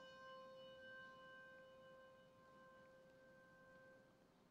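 A single struck bell tone, faint, ringing on and slowly fading after the strike.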